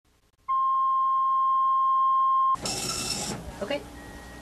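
Steady 1 kHz reference tone, the line-up tone at the head of a videotape, held for about two seconds and then cut off abruptly. A short burst of hiss follows.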